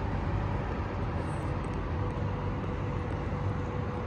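Steady low rumble of night-time city ambience, with a faint steady hum running through it.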